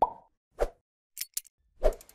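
Sound effects of an animated logo intro: a series of short soft pops, roughly one every half second or more, with a couple of brief high clicks between them.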